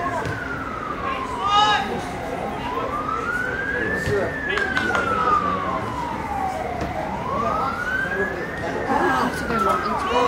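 Emergency vehicle siren in a slow wail, its pitch rising and falling smoothly about once every four and a half seconds.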